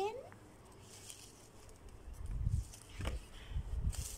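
Faint rustling of broccoli leaves being pushed into plastic plant pots, with a few soft knocks and low rumbles.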